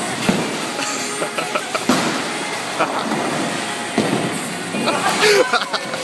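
Bowling alley din: a steady roar of balls rolling and pins clattering on the lanes, with sharp knocks about every two seconds. Voices and background music run under it.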